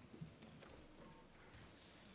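Near silence: the room tone of a hearing chamber, with a few faint knocks.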